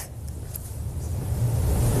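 A low rumble with no clear pitch, building in loudness over the two seconds.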